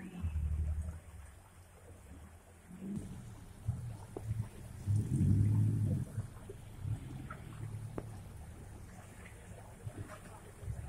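An off-road 4x4's engine revving in surges as it crawls over rocks in a shallow stream bed, heard low and at a distance, loudest about five seconds in.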